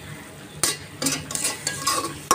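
A metal spatula stirring and scraping dried loitta fish (Bombay duck) and onions around a metal wok, with a sizzle of frying oil underneath. Several scraping strokes from about half a second in, as the masala is fried down (bhuna).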